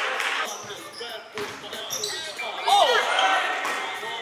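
A basketball bouncing on an indoor hardwood court, with players' voices echoing in the hall and a short falling squeal about three seconds in.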